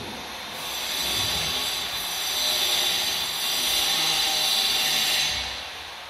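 A steady hiss lasting about five seconds, fading in at the start and easing off near the end.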